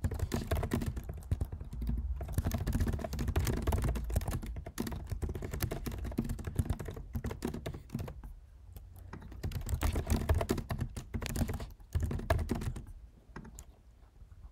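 Fast typing on a computer keyboard: rapid runs of key clicks broken by short pauses.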